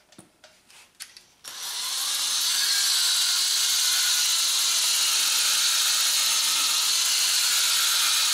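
Cordless drill spinning a Mothers PowerBall foam polishing ball against a plastic headlight lens. A few handling clicks come first, then the drill starts about a second and a half in and runs steadily.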